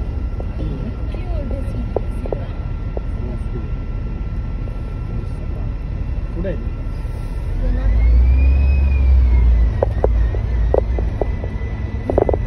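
Sightseeing double-decker bus driving along a city street: a steady low rumble of engine and road. About halfway through it grows louder for a couple of seconds, with a whine that rises and then falls back.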